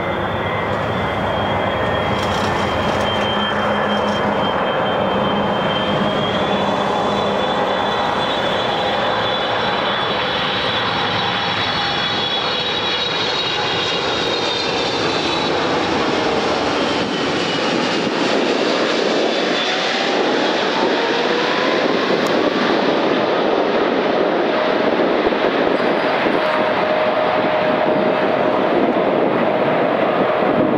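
Boeing 777-300ER's GE90 turbofan engines running on a low approach, a steady jet roar with a high fan whine that drops in pitch as the airliner passes low overhead. Later a rising tone as the engines spool up and the aircraft climbs away.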